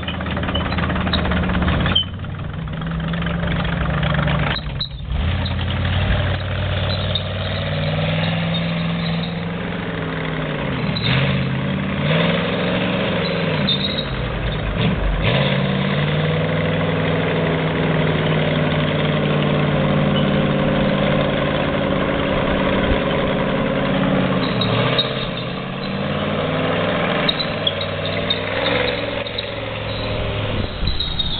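An M5A1 Stuart light tank running on a Chevy 366 big-block V8 through a Turbo 350 automatic transmission, with a hot-rod sound, as it is driven off. The engine note dips and rises several times in the first half, then holds steady.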